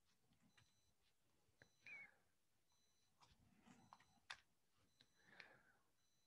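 Near silence: room tone, with a few faint clicks scattered through it.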